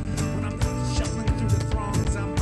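Live folk-rock band playing an instrumental passage: strummed acoustic guitar, bowed fiddle and electric guitar over a steady beat of cajon and kick drum.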